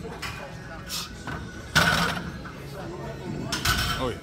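Loaded barbell clanking down into the steel uprights of an incline bench rack as the set ends. There is a sudden sharp metal clash a little under two seconds in and a heavier knock near the end.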